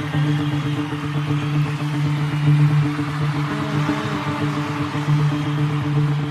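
Music: a rock cover's intro built on a steady, sustained low synth-pad drone holding one chord, with no drums yet.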